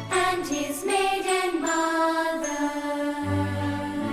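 Background music with slow, held notes and a few brief high tones; a low bass note comes in about three seconds in.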